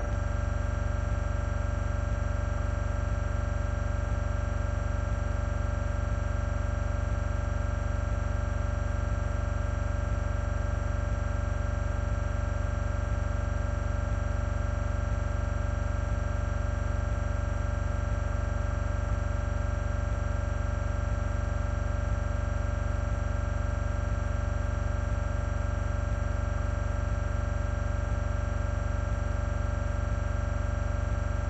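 A steady electronic drone: a low hum with several fixed tones above it, unchanging throughout.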